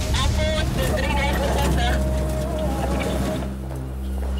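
Metro train running, a steady low hum, with indistinct voices over it.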